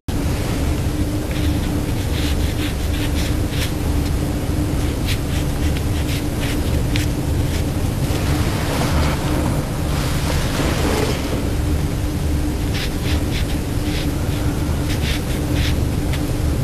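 Steady hiss with a low hum of background noise, over which a calligraphy brush makes faint short scratches on paper as characters are written. A longer, louder rustle comes about eight seconds in and lasts some three seconds.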